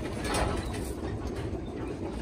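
Steady mechanical clatter and hum of dairy-barn milking equipment, with a few brief sharp clicks in the first second.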